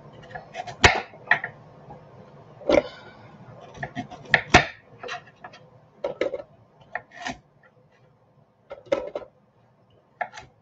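Carrots being cut into chunks with a kitchen knife on a wooden chopping board: irregular sharp chops and knocks, about a dozen, with carrot pieces dropped into a plastic food-processor bowl.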